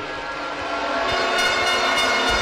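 A sustained, loud horn-like blare over a noisy background, growing stronger about a second in.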